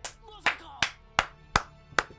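A run of sharp, evenly spaced hand claps, about three a second, over soft background music.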